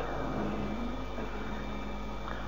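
Steady, low background hum with faint hiss in a pause between speech, room tone with no distinct event.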